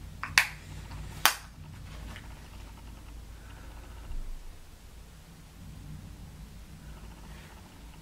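Two sharp plastic clicks about a second apart, an eyeshadow palette case being handled and snapped, over a faint low room hum.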